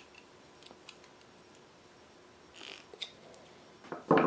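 Faint clicks and a brief scrape of steel hand-plane parts being handled while a Stanley bench plane is reassembled, with a short scrape about two and a half seconds in.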